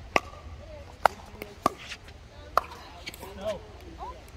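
Pickleball rally: paddles hitting a plastic ball in four sharp pops about a second apart, the loudest about a second in, with fainter pops in the background.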